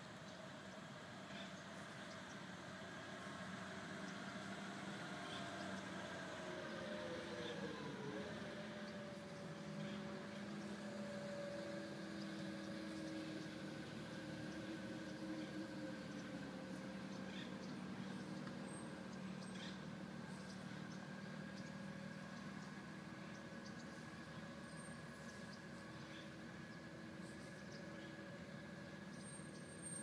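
Faint, steady hum of an engine running, its pitch falling about seven seconds in and then holding steady.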